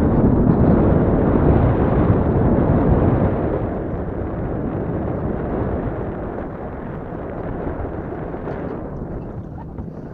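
Wind buffeting the camera's microphone: a heavy low rumble, strongest for the first three seconds or so, then gradually easing.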